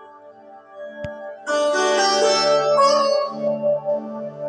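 Background instrumental music, soft at first, growing louder and brighter about a second and a half in, with a single short click about a second in.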